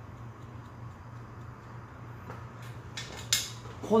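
Hairdressing scissors snipping through a mannequin head's wet hair: a few short, sharp metallic snips in the second half, the last one the loudest.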